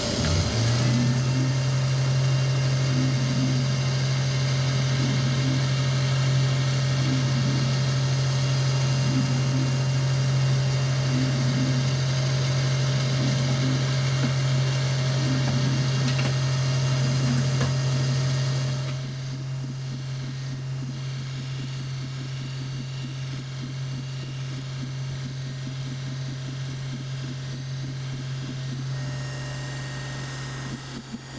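xTool D1 Pro 20 W diode laser cutting 3 mm Baltic birch plywood with air assist on, making a steady low mechanical hum with a faint higher tone over it. The hum drops somewhat in level about two-thirds of the way through.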